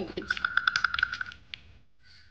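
A quick run of light fingertip taps, close to the microphone, as foundation is patted on with long-nailed fingers. The taps fade out about one and a half seconds in.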